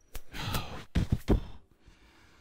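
A person's breath, a sigh-like exhale close to a microphone, followed about a second in by three quick, sharp thumps.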